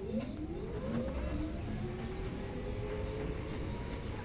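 Electric city bus pulling away from a stop: the drive motor's whine rises in pitch over the first second or two as the bus accelerates, then levels off, over steady cabin and road noise.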